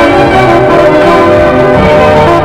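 Loud orchestral film-score music playing continuously, with many held notes sounding together.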